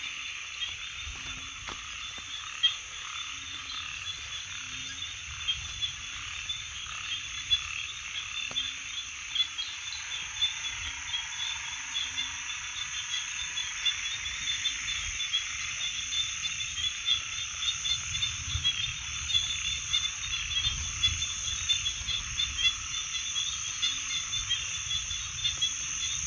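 A night chorus of frogs calling: short low croaks repeating about once or twice a second over a continuous high-pitched trilling.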